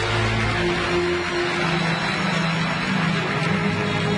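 Arab orchestra with violins and accordion playing an instrumental passage between sung lines, with long held notes and no singing.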